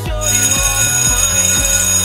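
School bell ringing steadily at a high pitch for about two seconds, starting just after the beginning, signalling the end of class. Background music with a steady beat plays underneath.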